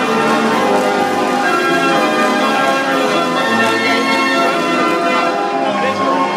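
A 65-key Bruder Elite Apollo band organ playing a tune, with steady, full music throughout.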